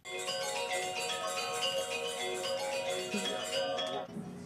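Chime-like musical tones from a building made into a musical instrument, played by touching wires strung through it: short notes come and go over a steady held chord, starting suddenly.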